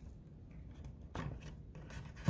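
Faint handling sounds of a thermostat wire being pushed into a plastic push-in terminal on the wallplate, with one short scrape a little over a second in.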